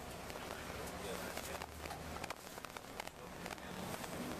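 Inside a moving tour bus: low engine and road rumble with scattered rattles and clicks, under faint, indistinct voices.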